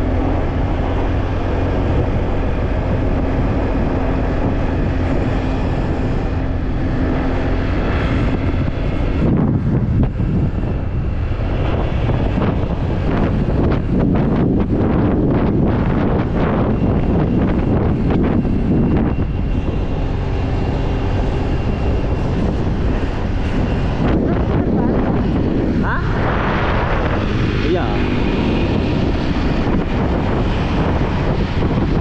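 Motorcycle engine running steadily at cruising speed, heard under wind rushing over the rider's camera microphone.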